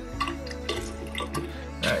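Liquid shellac poured from a small container into a glass bottle of methylated spirits, trickling and dripping.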